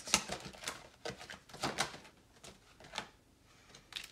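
Oracle cards being drawn from a deck by hand and laid on the tabletop: a series of irregular light card clicks and snaps, the sharpest right at the start, with a softer rustle of card sliding on card.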